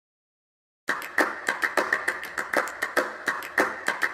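Silence for almost a second, then a fast, uneven rhythm of sharp percussive hits, about five a second, like the percussion opening of a song before the guitar comes in.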